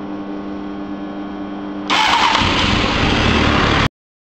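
Honda Hornet 600 inline-four being started: a steady electrical hum, then about two seconds in the starter cranks loudly and the engine fires into a deep running note. The sound cuts off suddenly just before the end.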